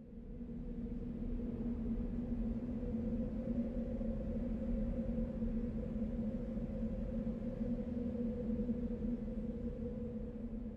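A steady low drone with a held hum-like tone. It swells in over the first second and eases off slightly near the end.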